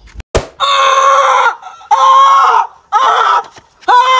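A sharp whack of a stick striking a man, then the man crying out in loud, long, high-pitched yells, three in a row with a fourth starting at the end.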